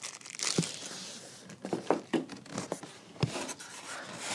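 Packaging being handled: plastic wrapping crinkling and rustling around a sewing machine's knee-lift bar, with a few light knocks and squeaks from the cardboard box and styrofoam packing.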